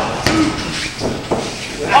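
A couple of dull thuds on the wrestling ring mat about a second in, as the wrestlers scramble out of a pin, with voices around them.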